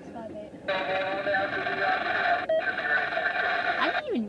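Freight train passing with a loud, sustained high-pitched multi-tone sound. It starts about a second in, breaks off for an instant midway, then carries on.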